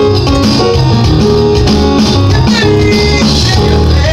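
Live band music played loud and steady on a keyboard and an electronic drum kit, with a strong bass line and a few sliding high notes.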